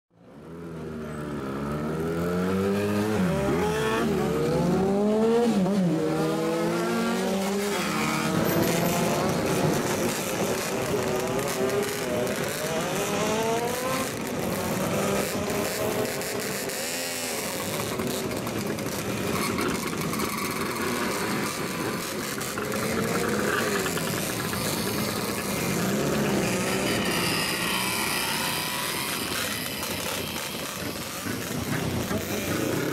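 Straight-piped old Japanese motorcycles revving their engines up and down over and over as they ride off one after another. The sound fades in at the start.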